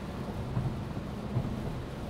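Steady road and engine noise inside a Peugeot car's cabin at motorway speed, about 110 km/h, on a wet road: an even rush of tyres and wind over a low drone.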